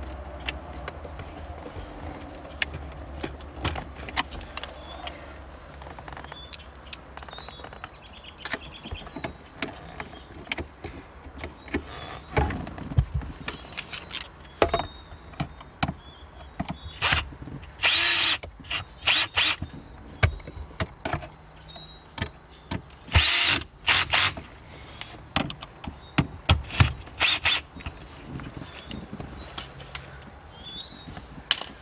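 Ryobi One+ cordless drill/driver running in short bursts, driving the screws of the plastic shifter trim plate back in. Scattered sharp clicks and knocks come between the bursts.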